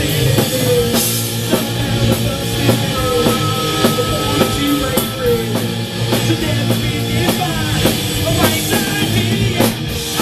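Live rock band playing: electric guitars, bass and a drum kit, with a woman singing lead.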